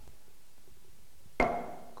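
An auctioneer's gavel strikes once, about halfway through, with a short ringing after it. It is the fall of the hammer that closes the bidding and marks the lot as sold.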